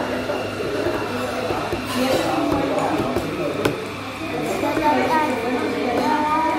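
Indistinct voices talking in a café dining room, with one sharp click a little past halfway.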